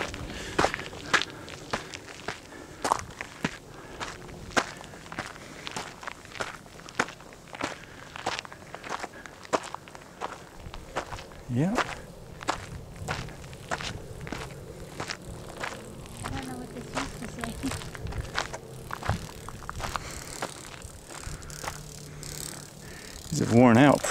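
Footsteps on a gravel and rock trail, walking at about two steps a second.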